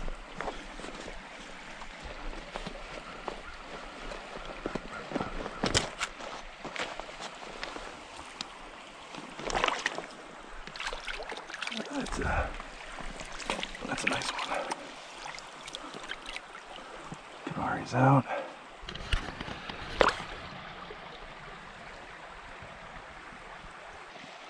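Shallow creek running steadily, with scattered splashes and sloshes as a brook trout is brought into a hand landing net and handled in the water.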